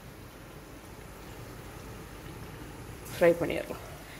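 Battered Nendran banana slices deep-frying in hot oil: a steady sizzle that grows slightly louder. A voice speaks briefly near the end.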